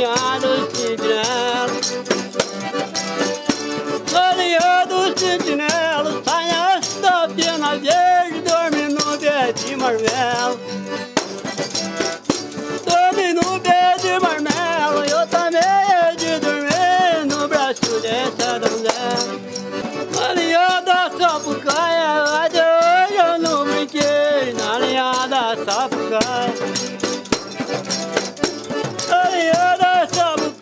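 A man singing a rural folk song in a strong, open-throated voice, phrase after phrase, accompanied by a rattling percussion instrument keeping time.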